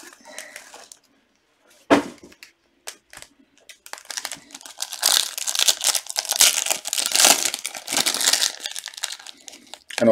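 Trading-card pack wrapper crinkling and tearing as gloved hands rip a 2018 Panini Prizm Racing pack open, after a single knock about two seconds in.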